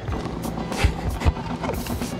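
A kitchen knife slicing cucumbers on a wooden cutting board, giving a few short, sharp knocks, over steady background music.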